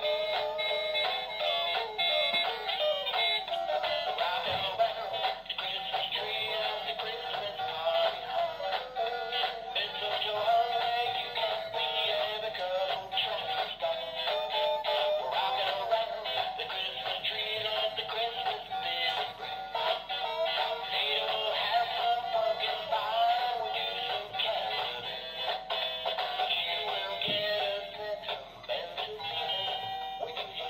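Animated plush singing Christmas-tree toy playing a sung Christmas tune through its small built-in speaker. The sound is thin, with almost no bass.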